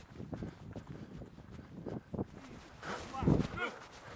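Faint voices of people talking at a distance, then a loud drawn-out shout about three seconds in.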